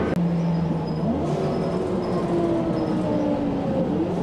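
Ride noise inside a moving passenger vehicle: a steady rumble under a motor whine that rises in pitch about a second in as the vehicle picks up speed, then slowly sinks.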